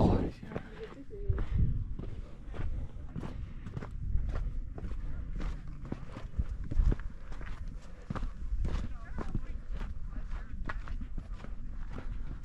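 A hiker's footsteps on a rocky trail of sandstone and gritty sand, a steady walking rhythm of about two steps a second.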